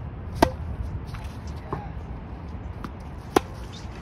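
Tennis racket striking the ball on forehand strokes: two sharp, loud hits about three seconds apart, with fainter ball bounces on the hard court between them.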